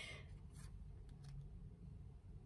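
Faint soft rubbing and brushing of a card being handled: one brush at the start, then a few fainter ones, over a low steady room hum.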